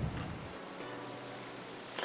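Quiet steady hiss of room tone.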